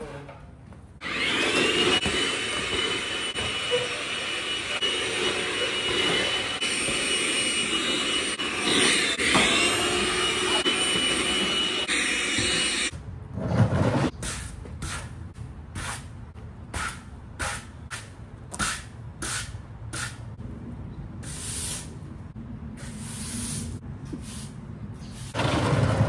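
Cordless stick vacuum running on a hard floor, a steady motor whine that dips briefly partway through as the load changes, for about twelve seconds. Then it stops, and a run of short cleaning strokes follows on a concrete patio, a little over one a second.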